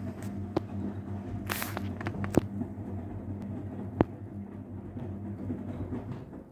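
Castor CX342 front-loading washing machine tumbling its drum in the 70 °C main wash: a steady motor hum with wet, sudsy laundry turning in the drum. A few sharp clicks and knocks, the strongest a short burst about one and a half seconds in and a click at about four seconds.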